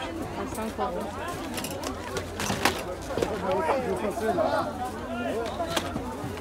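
Unclear chatter of several people talking at an open-air market, with a sharp knock about two and a half seconds in.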